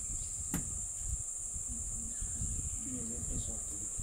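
Steady high-pitched chorus of insects over a low rumble, with a single sharp click about half a second in and a few short low murmurs in the second half.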